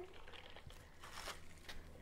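Faint clinks and rustling from a glass mason jar of ice and lemon halves being shaken, with a paper towel crinkling over its open mouth as a makeshift lid. There are a few soft knocks.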